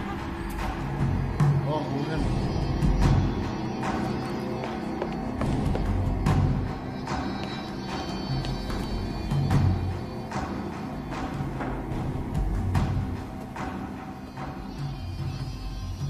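Suspenseful film score: sustained low tones under deep drum hits that come about every second and a half.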